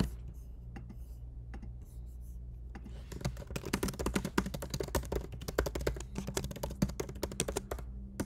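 Computer keyboard typing: a few scattered keystrokes at first, then fast, continuous typing from about three seconds in, over a low steady hum.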